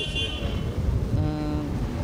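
A diesel wheel loader's engine running close by as it drives past, with a vehicle horn sounding once, steadily, for under a second, about a second in.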